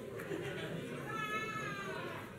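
A high-pitched squeal, falling slightly and lasting under a second, about halfway through, over the murmur of a crowd moving about.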